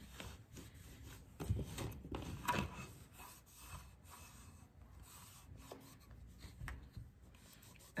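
A cloth rag rubbing dark wax into the edge of a decoupaged mixed-media piece, a faint, irregular scuffing that is a little louder about one and a half and two and a half seconds in.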